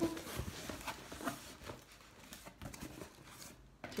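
Cardboard parcel box being opened with a small knife: faint, intermittent scratching and scraping as the blade cuts the packing tape, with rustling of cardboard and packing.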